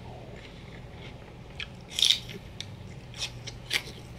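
A bite into a raw celery stick spread with peanut butter: one loud crisp crunch about halfway through, followed by a few smaller crunches of chewing.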